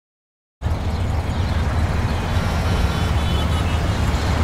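Motorcycle engine idling with a steady low rumble that cuts in suddenly about half a second in.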